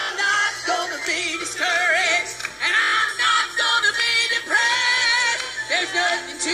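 Gospel church choir singing with music, mixed female and male voices held in long wavering notes with vibrato.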